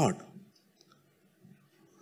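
A man's spoken word trailing off, then a pause of near silence with a couple of faint clicks.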